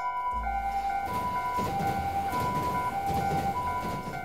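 Two-tone ambulance siren in the Japanese style, switching between a high and a low note about every 0.6 s, with a rushing vehicle noise that swells in the middle as the ambulance passes.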